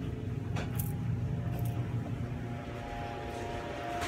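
A low steady hum with a few faint rustles of a phone being handled, and a faint steady high tone from about a second in.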